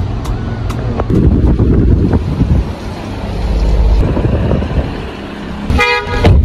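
Loud, uneven low rumbling noise that swells and fades, with a short chord of several steady tones just before the end.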